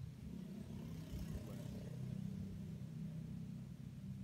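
A motor vehicle's engine running steadily, with a brief whoosh about a second in.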